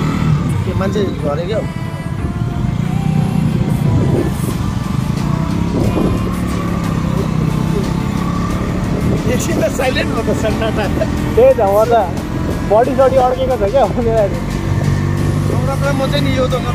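Motorcycle engine, a single-cylinder KTM Duke, running as the bike pulls away and gathers speed, with wind noise on the microphone. A person's voice is heard over it in the second half.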